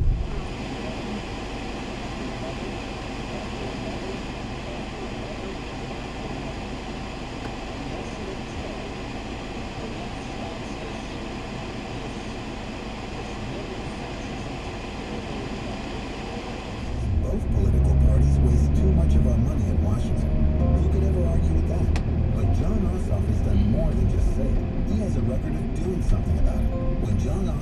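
A steady, quieter hum with faint held tones for about seventeen seconds. Then a louder low rumble of a car's engine and tyres heard from inside the cabin comes in suddenly and keeps going.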